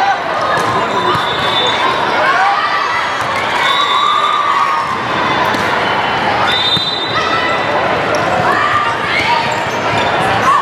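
Volleyball rally in a large gym hall: the ball struck in sharp slaps, with players and spectators calling out over the constant hall noise.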